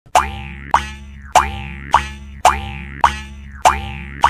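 Cartoon "boing" spring sound effect repeated seven times at an even pace, nearly twice a second. Each is a sharp strike with a rising pitch slide that rings on and fades before the next.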